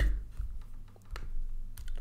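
Typing on a computer keyboard: a few separate keystroke clicks, over a low steady hum.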